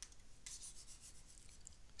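Faint scratching of a stylus or pen moving over a tablet surface while writing is erased, loudest in the first half-second, with a few light ticks near the end.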